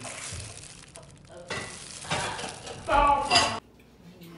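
Clear plastic food-prep gloves crinkle and a spring-roll wrapper rustles as hands roll banana turon. About three seconds in, a brief loud voice comes in and cuts off suddenly.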